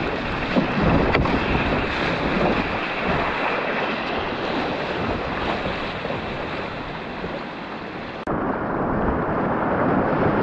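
Whitewater rapids on the Upper Gauley River rushing steadily around the kayak. A little after eight seconds the sound changes abruptly and the higher hiss drops away.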